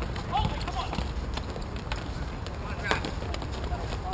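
Sounds of a hockey game on a plastic tile rink: scattered sharp clacks of sticks and ball on the hard floor, with players' short distant shouts, over a low wind rumble on the microphone.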